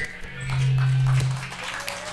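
One low note on an amplified electric string instrument, held steady for about a second and then fading.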